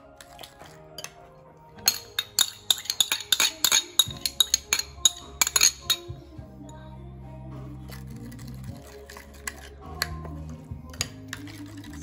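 Metal spoon clinking quickly and repeatedly against a ceramic bowl while stirring a liquid dipping sauce, a run of about four seconds starting about two seconds in, with a few scattered clinks later. Background music plays underneath.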